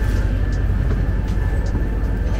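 Steady low rumble and hum of indoor terminal background noise, with a faint steady high tone running through it and a few soft ticks.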